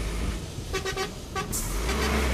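Road traffic at a roadworks site, with two short horn toots about a second in. A heavy vehicle's rumble swells near the end.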